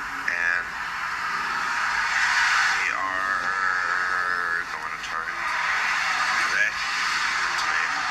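A recorded voice talking, played back through the small speaker of a handheld device, thin with almost no bass, over a steady hiss.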